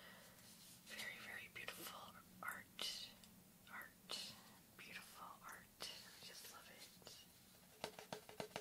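Quiet whispering mixed with fingernails scratching and tapping on the surface of a printed egg-shaped Easter plaque, in short soft strokes.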